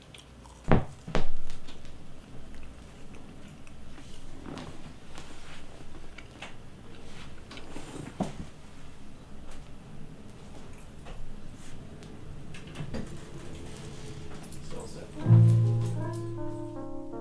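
A quiet stretch of small knocks and clicks, two of them sharp about a second in, then near the end a guitar strikes a sustained low chord as a live band starts playing.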